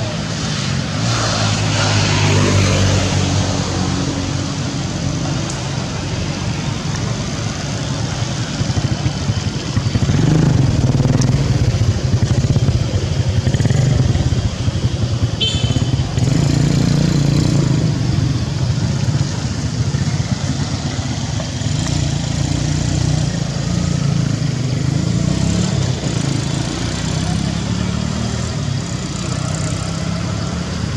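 A motor engine running steadily nearby, its low hum swelling and fading like passing motor traffic.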